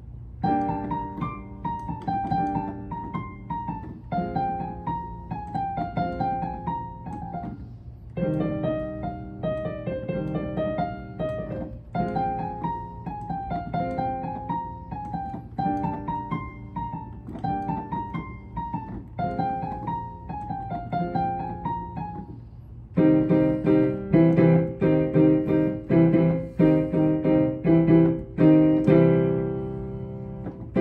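Digital piano playing a slow classical-style piece: a rolling melodic figure that repeats about every two seconds, then about 23 seconds in it turns louder with full, heavy chords, ending on a chord that fades.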